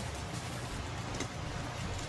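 Steady low room hum with a few faint rustles as a paper sticker sheet is handled over an open cardboard box.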